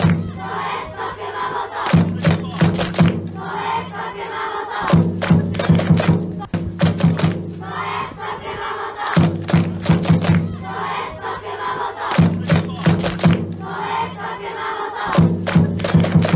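A group of voices chanting a cheer in unison over drum beats, the same phrase coming round every three to four seconds.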